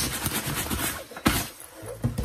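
Synthetic jacket fabric rustling and scraping as it is rubbed with a wipe, with one louder scuff a little after a second in.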